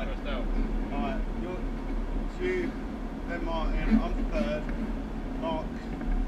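Indistinct chatter of several voices over a steady drone of go-kart engines running on the track.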